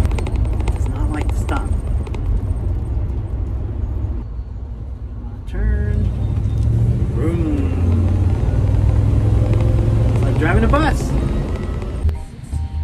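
Steady low rumble of engine and road noise inside the cab of a 2002 Fleetwood Fiesta class A motorhome driving along, easing off briefly about four seconds in, with a few short indistinct bits of voice over it.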